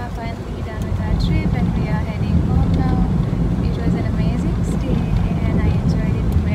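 Steady low rumble of road and engine noise inside a moving car's cabin, with a voice over it.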